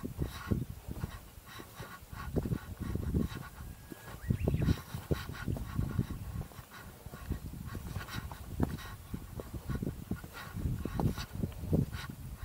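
Wind buffeting the microphone in irregular low gusts, with a run of short, repeated sounds over it.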